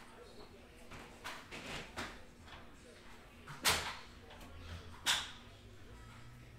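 A few short, sharp knocks and clatters, like objects being handled and set down on a table. The loudest come about three and a half seconds in and again about five seconds in.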